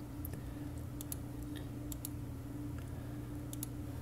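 Light computer keyboard keystrokes: about half a dozen scattered clicks, several in quick pairs, over a steady low hum.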